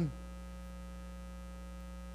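Steady electrical mains hum in the sound system, a low, unchanging buzz made of many even tones, heard on its own in a gap between spoken words.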